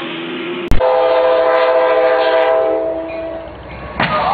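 Locomotive air horn blowing one long chord of several notes at once, starting abruptly with a sharp click about a second in and stopping at about three and a half seconds, over the steady running noise of the train.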